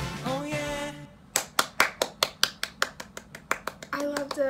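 A sung pop vocal holds its last note and stops about a second in; then one person claps their hands quickly and evenly, about six claps a second.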